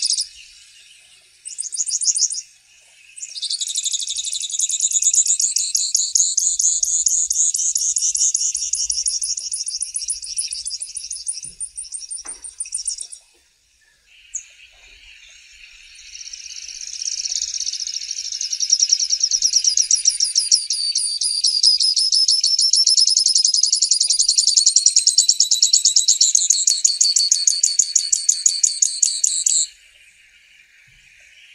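Grassland yellow finch singing: after a short opening burst, two long, rapid, high-pitched trilling songs, about ten and fifteen seconds long, the second cutting off suddenly near the end.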